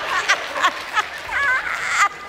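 Women laughing hard in short repeated pulses, about three a second, with a high wavering squeal of laughter about one and a half seconds in.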